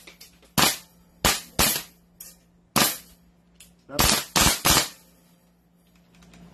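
BLK M4A1 gas blowback airsoft rifle firing about eight single shots, unevenly spaced over five seconds. Each shot is a sharp crack with the bolt's recoil clack.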